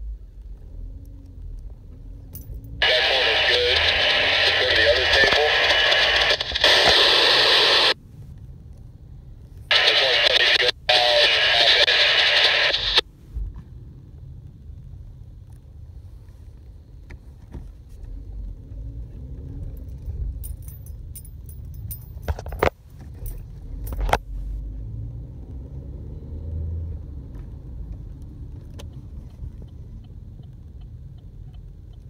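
Two-way radio voice transmissions through a handheld scanner's speaker: two bursts of a few seconds each, cutting in and out abruptly as the squelch opens and closes, in the first half. After that only a low steady rumble, with two short clicks near the end.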